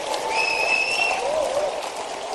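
A large audience applauding, with a thin high tone sounding for under a second near the start.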